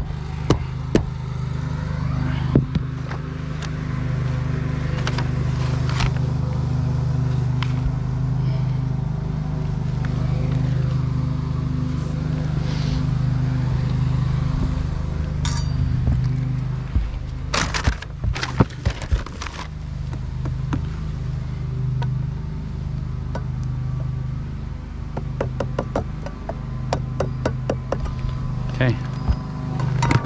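Steady low drone of a running motor, with scattered knocks and taps of hand work on metal flashing and the shingles. A quick run of sharper knocks comes a little past halfway, and more taps come near the end.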